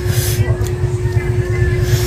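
Short, sharp hissing breaths through the mouth, one just after the start and another near the end, from a mouth burning on very spicy shrimp paste. Under them runs a constant low rumble with a steady hum.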